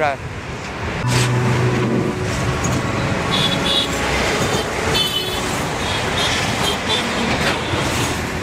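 Busy city road traffic passing close by: buses, taxis and two-wheelers running in a steady stream. A low engine hum comes just after the start, and a few short high-pitched horn toots sound near the middle.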